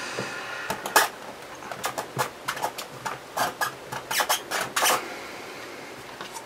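Hands pressing and tapping on the clear acrylic plate of a stamping press tool as a rubber stamp is pushed onto card: a string of light clicks and taps, with a short rubbing scrape near the end.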